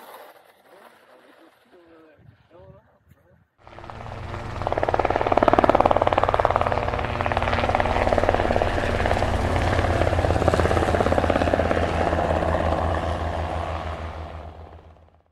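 A helicopter's rotor beating steadily, coming in suddenly about three and a half seconds in and fading toward the end. Only faint, quiet sounds come before it.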